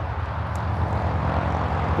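Steady rumble of highway traffic on the freeway below the Narrows Bridge, a low drone with an even hiss of tyres.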